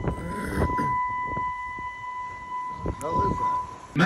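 A steady high-pitched electronic alarm tone sounds continuously aboard a cruise ship and stops shortly before the end. Indistinct voices and rushing noise run underneath it.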